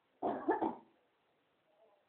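A dog barking: a quick burst of about three barks a quarter of a second in.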